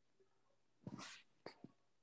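Near silence: room tone, with a few faint short noises about a second in and again shortly after.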